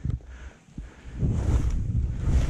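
Wind buffeting the microphone over the hiss of sliding down through soft snow, quiet at first and then a loud low rumble from about a second in as speed picks up.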